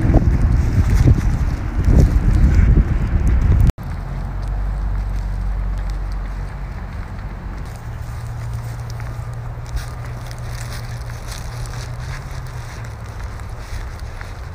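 Wind buffeting a handheld phone microphone outdoors, loud and gusty for the first few seconds. After a sudden cut it drops to a quieter, steady low rumble.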